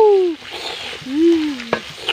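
Prawns sizzling in oil in a wok as they are stirred with a spatula. Over it come two drawn-out, voice-like 'oh' calls that rise and fall in pitch: one fades out just after the start, the other comes about a second in and ends with a sharp click.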